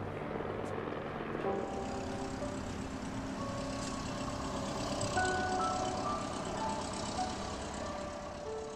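A steady rushing roar of jet aircraft engine noise with a soft film score of slow, held notes laid over it.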